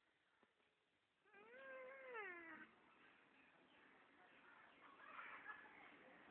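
A single drawn-out, high-pitched vocal cry lasting over a second, rising slightly and then falling away, heard faintly against near quiet.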